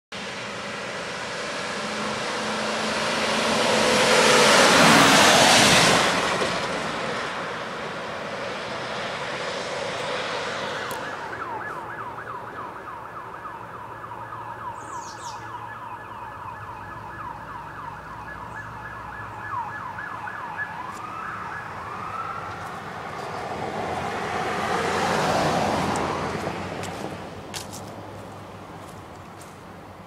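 Emergency vehicles on call passing close one after another with sirens sounding. The first goes by loudest about five seconds in, a rush of engine and tyre noise. A siren then yelps fast, about four rising sweeps a second, with a couple of slower wails, before a second vehicle rushes past near the end.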